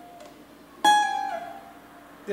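Cavaquinho, played slowly: a high A-flat is plucked about a second in, then pulled off down to a lower note about half a second later, which rings and fades.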